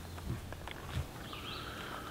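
Quiet woodland ambience over a low steady hum: a few soft clicks, then faint high, steady bird calls in the second half.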